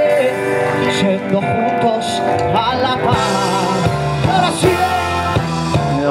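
Live reggae band playing, with a male singer's voice held in long wavering notes over electric guitar and band backing.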